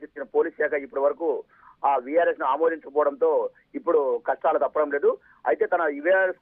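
Only speech: a reporter talking in Telugu over a telephone line, thin and narrow-sounding.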